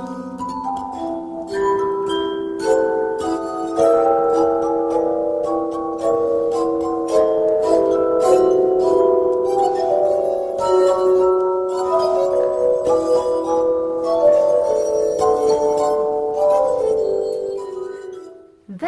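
Glass harp: two players rub the rims of tuned wine glasses, giving sustained ringing notes that overlap in a slow, flowing melody. The sound fades out near the end.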